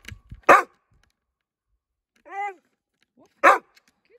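A black Labrador-type dog barking on command: two short, loud barks about three seconds apart, with a brief, quieter pitched sound between them.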